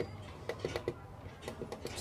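A few faint, scattered clicks of a screwdriver tip pressing the small push buttons on a car stereo's plastic faceplate, over a low steady hum.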